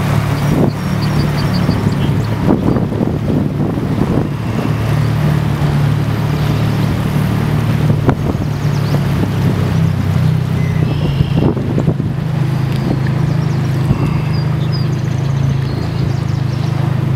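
Boat engine running at a steady drone, heard from on board while cruising.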